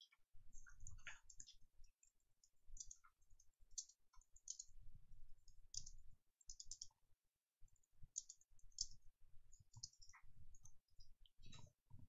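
Faint computer keyboard typing: runs of quick keystroke clicks with short pauses between words.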